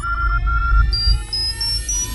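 Electronic logo sting: synthesized tones gliding slowly upward over a low bass rumble, with a row of short beeps early on and then four short beeps climbing in pitch step by step.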